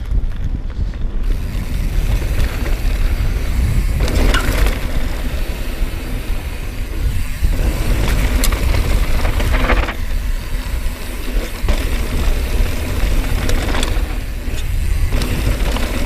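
Mountain bike descending a dirt trail: the tyres run steadily over the loose surface, with a few knocks and rattles from the bike, under heavy wind rumble on the action-camera microphone.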